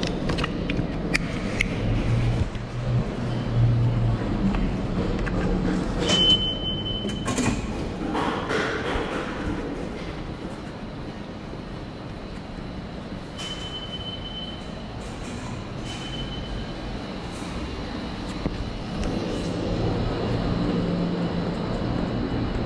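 Subway station ambience: a steady low rumble of trains and station machinery, with scattered clicks and knocks and a few brief high-pitched squeals, the first about six seconds in.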